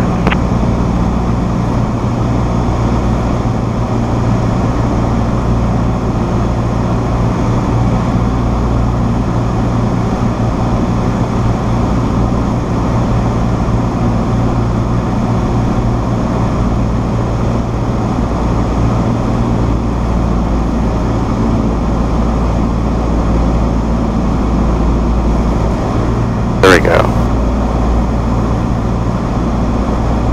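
Cessna 172SP's four-cylinder Lycoming engine and propeller droning steadily, heard inside the cockpit, a constant low hum under an even rush of noise.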